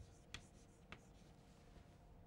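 Chalk writing on a chalkboard: a few faint, short chalk strokes and taps, about three in the first second and one more, fainter, near the end.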